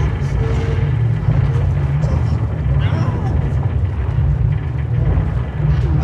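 A loud, steady low rumble, with brief strained vocal sounds over it around the middle and again near the end.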